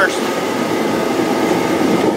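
Portable space heater running steadily: a loud, even blowing noise with a faint steady hum.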